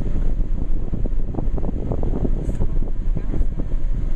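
A car rolling slowly along a gravel driveway, heard from inside the cabin: a steady low rumble of engine and tyres with an irregular crackle from the gravel.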